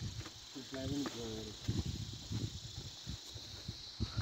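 Footsteps and handling knocks while walking over loose rock, with a brief voice sound about a second in, over a steady high hiss.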